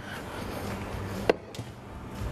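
A single sharp knock of kitchenware, such as a plate or utensil against a counter or pan, about a second and a half in, over a steady background hiss.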